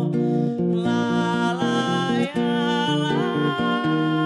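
A woman singing, with an acoustic guitar accompanying her. The voice glides between long-held notes.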